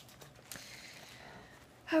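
Faint rustling of packaging as a fabric dust bag is lifted out of its tissue, a soft noise without any clear strokes.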